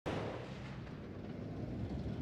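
A low, steady rumble that starts abruptly at the very beginning.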